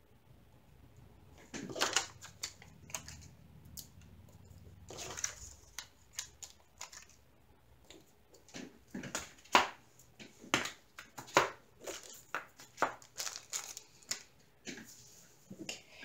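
Small plastic baggies of diamond-painting drills being handled on a table: irregular crinkling of thin plastic mixed with light clicks and taps, starting about a second and a half in.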